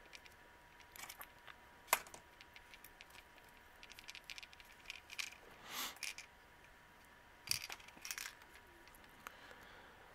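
Small metal binder clips being handled and clamped on, their steel jaws and wire handles clicking and clinking in scattered sharp snaps, the sharpest about two seconds in, with soft rustling of ribbon between.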